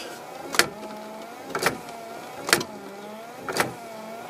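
Land Rover Defender windscreen wiper motor running with the washers on, a sharp click about once a second at each sweep and a motor whine that dips and rises between clicks.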